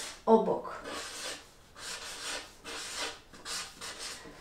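Felt-tip marker scratching across flip-chart paper in a series of short separate strokes as a word is handwritten. A brief vocal sound comes just after the start.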